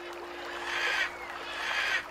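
Soft background music holding one steady low note, under two gentle swells of flowing-water ambience that each grow louder.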